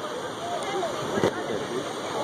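Ocean surf washing and churning as a steady rush of water, with a few brief indistinct voices.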